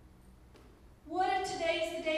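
A woman's voice through a hand-held microphone, starting about a second in with long, drawn-out held tones after a quieter first second.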